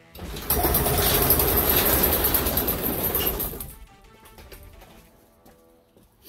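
Garage door being opened: a loud rattling, rumbling run of about three and a half seconds that then dies away.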